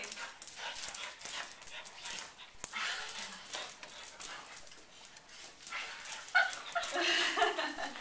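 Two dogs play-wrestling over a toy: scuffling and short clicks on a hard floor, with dog vocal sounds, louder about six to seven seconds in.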